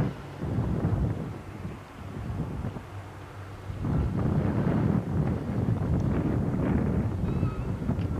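Wind buffeting a camcorder microphone outdoors: an uneven low rumble that eases off for a couple of seconds, then grows louder again about four seconds in.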